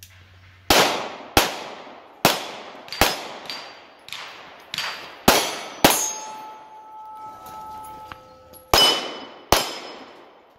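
Pistol shots, about ten at an uneven pace with a pause of roughly three seconds near the middle, fired at steel targets. After several of the shots a steel plate rings with a clear lingering tone.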